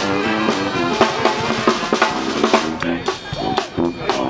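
A New Orleans-style brass band playing live: saxophones and other horns with a sousaphone bass line, driven by snare drum and bass drum beats.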